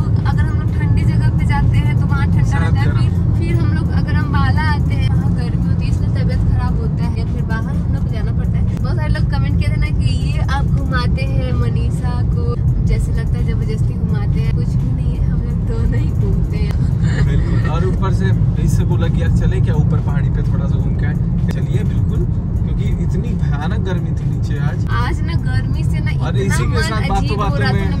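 Steady low road and engine rumble heard inside the cabin of a moving car, with people talking over it.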